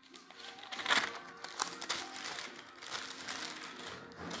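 Thin Bible pages being turned by hand, rustling and crinkling in irregular quick flicks, loudest about a second in.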